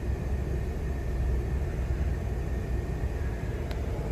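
Steady low rumble and air rush inside the cabin of a 2020 Ford F-150 King Ranch, with the engine idling and the climate-control fan blowing. A single brief click comes near the end.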